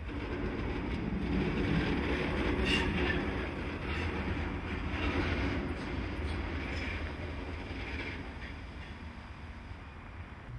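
Vossloh G 1206 diesel-hydraulic shunting locomotive rolling slowly over the station tracks, its diesel engine running with a low steady drone and its wheels clicking and squealing now and then on the rails and points. It is loudest a couple of seconds in and fades as it moves away.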